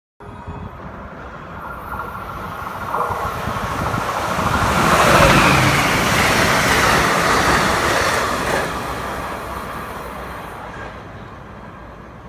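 Amtrak test train hauled by a Siemens ACS-64 electric locomotive passing at speed on the Northeast Corridor: a rushing of wheels on rail and moving air that swells to a loud peak about five seconds in, then fades steadily as the train recedes.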